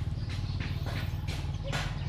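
A small engine running steadily, a low pulsing drone, with faint short sounds scattered over it.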